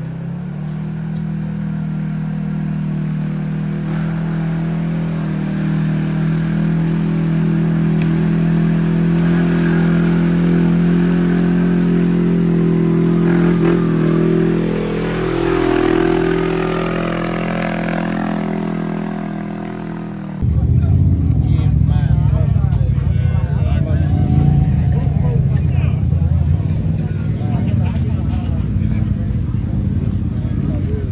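Can-Am Maverick X3 side-by-side running steadily as it drives up the trail, its pitch wavering and dipping as it passes close by near the middle. About twenty seconds in, the sound cuts abruptly to a louder, rougher engine rumble.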